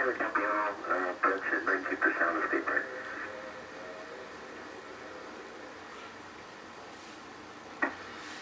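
A man's voice over a mission-control radio loop, thin and telephone-like, heard from a television for about three seconds, then a steady low hiss with a sharp click near the end.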